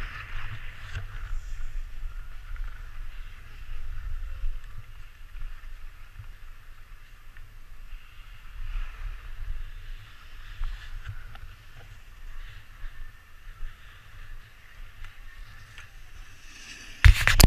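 Skis gliding and scraping over packed snow, a continuous hiss that swells and eases with the turns, over a low wind rumble on the microphone.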